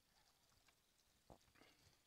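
Near silence, with a couple of faint short clicks past the middle.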